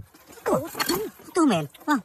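Speech: a voice talking in short exclamations that fall in pitch.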